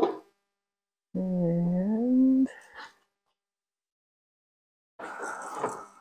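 A short knock as the combat robot is set down on the floor scale, then a man's hummed "hmm", about a second long, rising in pitch.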